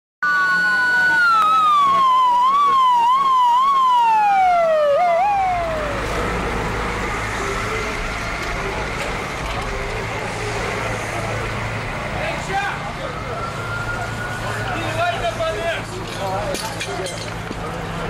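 Fire engine sirens sweeping rapidly up and down in pitch over a steady tone, loud for the first five seconds. Then a fire engine's engine runs low and steady while a siren wails up and down more faintly.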